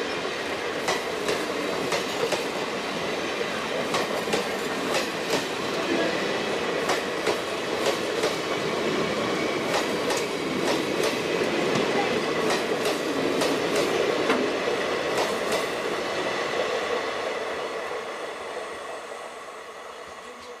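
Passenger train of blue coaches running past, a steady rumble with the wheels clicking over the rail joints in an irregular clatter. The sound fades over the last few seconds as the final coach pulls away.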